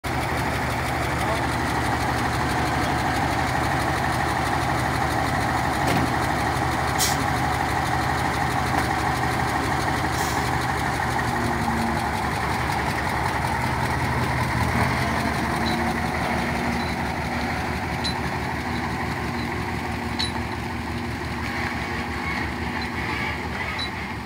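Diesel engine of a heavy tractor-trailer truck running steadily, loud and close, easing off a little in the last few seconds as the truck moves away.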